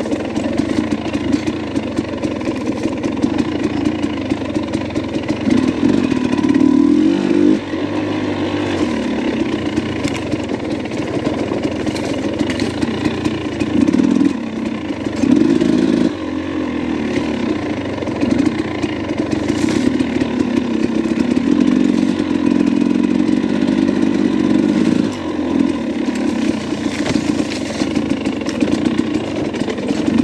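Dirt bike engine running at low to moderate revs on rocky single track, the throttle opening and closing so the pitch rises and falls, with a few brief drops where the rider backs off.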